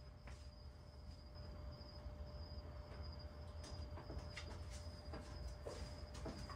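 Faint, steady high-pitched trilling of crickets in the dark, with a few soft clicks in the second half.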